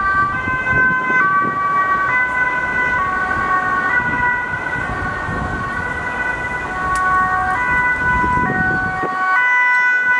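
Dutch ambulance siren on a Mercedes-Benz Sprinter ambulance, sounding a two-tone alternating wail that steps between pitches a little under once a second, over road traffic noise.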